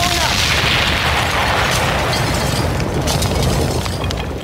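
A sudden boom from the stage sound system, a hissing rush that fades over about three seconds over a steady deep bass, at a live bouyon concert.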